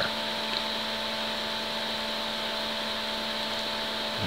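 A steady background hum with hiss, holding one level throughout, with a few constant tones in it and no other events.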